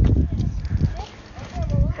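BMX bike being ridden with the phone held at the handlebars: uneven low rumbling and knocking from the ride and the handling of the phone, with a faint voice in the background.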